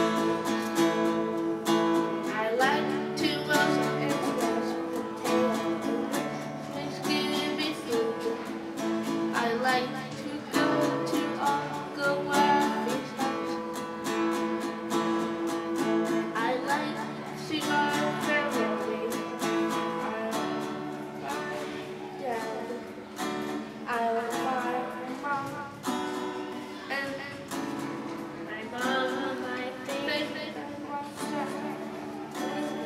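Acoustic guitar strummed steadily under a voice singing a simple song.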